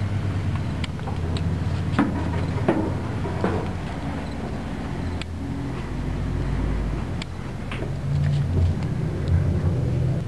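Footsteps knocking on the steel deck and grating of a blast drill while walking into its machinery house, the steps landing at uneven intervals. A steady low mechanical drone runs underneath.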